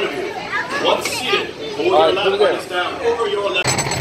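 Overlapping voices of adults and children chattering. Near the end a sudden cut to the loud, dense rattle of a roller coaster car running along its track.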